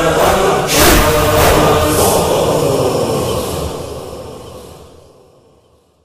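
The close of an Arabic nauha, a Shia lament, chanted by a chorus of voices with a few heavy, echoing beats about once a second in the first two seconds. The chanting then fades out to near silence by the end.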